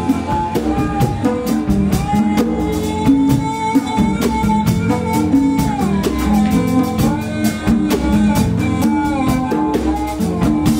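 Live band music: a bowed string instrument plays a sustained melody with sliding, bending notes over tabla and drum-kit percussion.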